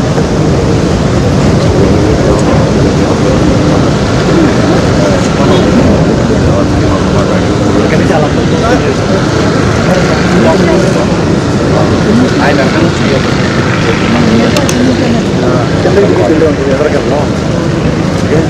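Many people talking at once over a loud, steady outdoor rumble.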